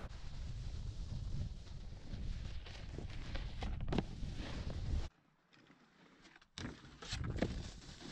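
Snowboards sliding and scraping over packed snow, with wind rumbling on the microphone. The sound drops out for about a second and a half past the middle, then picks up again.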